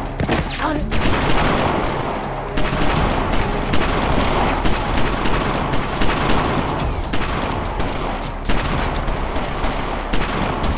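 Sustained gunfire: many shots from several guns overlapping in quick, irregular succession, easing only for a moment now and then.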